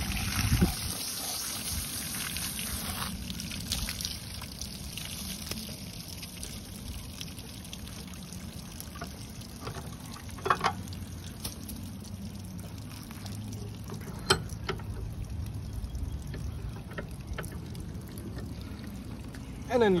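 Water from a garden hose running and trickling over a freshly scaled red drum and a metal table, spilling off the table's edge, as the fish is rinsed of loose scales. The flow is heaviest in the first few seconds, and a couple of brief, sharper sounds stand out about halfway through.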